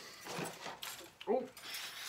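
Plastic model-kit parts, bags and box knocked about on a desk, with a few short rattles and clicks, then a rustle near the end as they are caught before falling.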